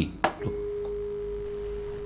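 A single pure, steady mid-pitched tone, starting about half a second in and holding at an even level.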